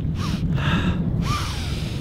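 A man taking deep breaths of sea air, three breaths in a row, the last the longest, over a steady rumble of wind on the microphone.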